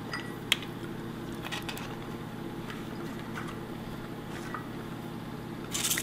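Light scattered taps and clicks of pecan halves being pressed down onto softened chocolate kisses on mini pretzels laid on a baking sheet, with a sharper click about half a second in, over a steady low hum.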